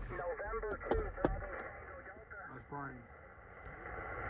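Faint, muffled voice coming through a ham radio transceiver's speaker, cut off above the low and middle pitches, over a steady hiss from the receiver. Two sharp clicks come about a second in.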